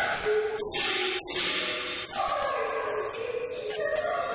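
Live Cantonese opera (yuequ) music: a held melodic line that slides downward in pitch from about two seconds in.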